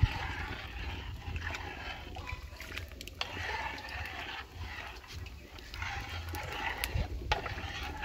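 Metal ladle stirring atol de piñuela in a large cast-iron pot: liquid sloshing that swells and fades, with a few sharp clicks of the ladle against the pot.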